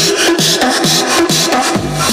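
Loud electronic dance music with the deep bass cut out: a synth note that falls in pitch repeats about twice a second over a bright hissing layer, and the low end comes back in near the end.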